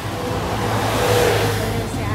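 A road vehicle passing close by, its tyre and engine noise swelling to a peak about a second in and then fading.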